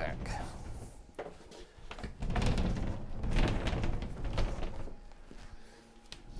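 A heavy MDF cabinet on caster wheels, holding a shop vacuum, is rolled and shoved back into place under a table. It makes a low rumble, with several wooden knocks and bumps as it goes in.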